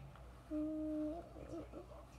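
A person humming: a steady held note starting about half a second in, breaking after about two-thirds of a second into a short wavering hum.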